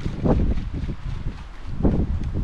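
Wind buffeting the microphone: an uneven low rumble that swells and dips in gusts.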